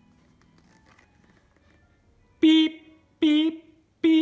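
Three short, identical horn-like beeps, evenly spaced less than a second apart, starting past the middle, with the last right at the end. They follow a faint rustle of a board-book page being turned.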